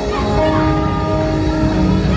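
Live worship music: a chord of several steady tones held for over a second, starting about a third of a second in, with the band's low end going on beneath.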